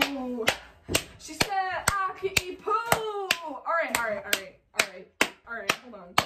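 One person clapping hands in a steady beat, about two claps a second, with short wordless vocal sounds between some of the claps.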